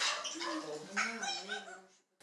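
A child's wordless, whining vocal sounds: drawn-out wavering tones that rise and fall, with a few light clicks.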